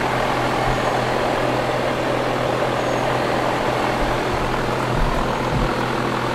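Air-conditioning condenser unit running: a steady rush of fan noise over a low, even hum.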